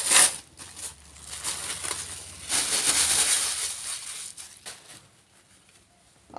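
Tissue paper rustling and crinkling as a gift is unwrapped by hand. It comes in two louder spells, at the start and again about two and a half seconds in, with lighter crackles between.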